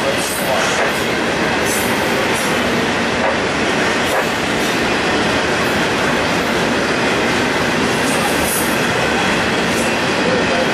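Double-stack intermodal train of container well cars rolling past: a steady, loud rumble of steel wheels on rail. Brief high-pitched wheel squeals come now and then, several in the first few seconds and one near the end.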